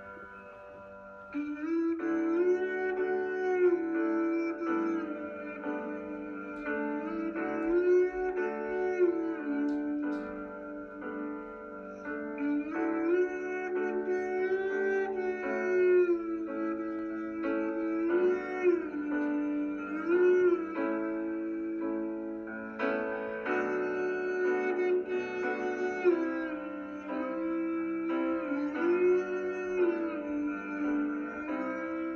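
Conch shell blown as a horn, playing a melody of held notes with slides between pitches, over a sustained accompaniment. The melody comes in about a second and a half in.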